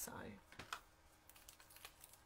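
Near silence with a few faint, light clicks and taps from small craft pieces and a liquid glue bottle being handled on a work mat.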